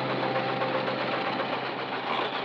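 Car engine running steadily with a dense, rough rumble, as the musical tones of the score fade out beneath it.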